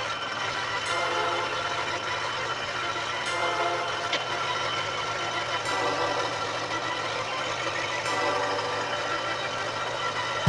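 Electric scroll saw running with a steady hum, its reciprocating blade cutting a curve in an MDF board.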